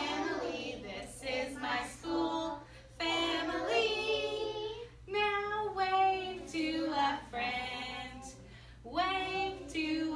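A woman and a small group of young children singing together, a simple song in sustained, held notes with short breaks between phrases.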